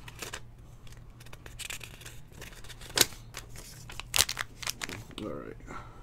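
Foil trading-card packs crinkling and clicking as they are handled and stacked on a table, with irregular sharp clicks, the loudest about three seconds in and another about a second later.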